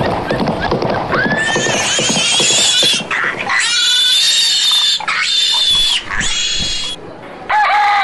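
Cartoon pig squealing: several long, high squeals one after another, after a second of busy clatter at the start. A short bird call comes near the end.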